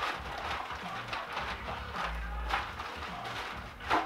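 Handling noise from packaging: rustling and several short knocks and clunks as a turntable platter is lifted out of its box, with a low thud a little after two seconds in.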